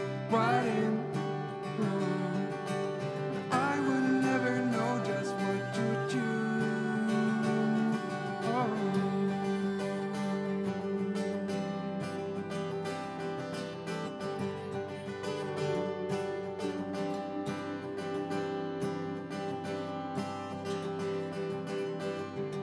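Acoustic guitar playing a slow song, with a held melody line sliding into its notes during the first half, in a reverberant stone church.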